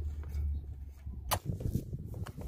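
Handling noise from a cordless drill being set against a go-kart's throttle arm: a low rumble, then one sharp click a little over a second in, followed by uneven low knocking and rumbling.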